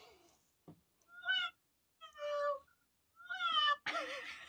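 Three cat-like meows about a second apart, the last one gliding down in pitch.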